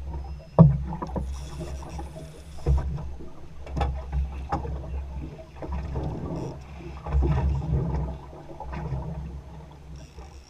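Lake water slapping against the hull of a small fishing boat, with a low rumble and a run of knocks and thumps on the boat as the crew works a hooked fish. The loudest thump comes just under a second in.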